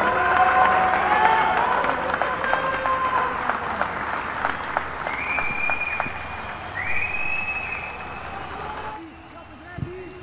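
Several men's voices shouting over steady rhythmic hand clapping. Two long, high whistle blasts come about five and seven seconds in. Near the end the sound falls away to quieter match audio.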